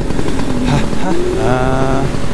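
A man laughing in drawn-out, sing-song "ha, ha" notes over a steady rushing noise of flight.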